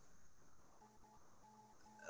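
Near silence: a pause in speech, with a few very faint short electronic tones, like beeps, in the second half.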